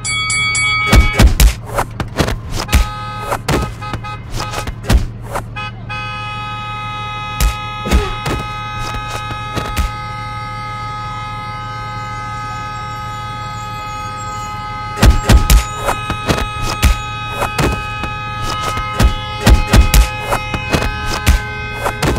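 Loud thumps of punches in a street fistfight, coming in two flurries, the first just after the start and the second from about fifteen seconds in. Under them, a steady, many-toned hum sets in about six seconds in and holds.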